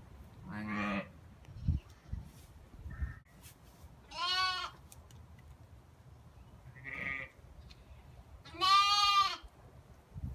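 Newborn lambs and their ewe bleating in separate calls: a lower call about half a second in, a high bleat around four seconds, a brief one near seven seconds, and the loudest, a long high bleat near the end. A couple of dull thumps fall in between.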